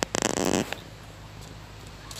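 A single short, rough animal call, about half a second long, from a farm animal.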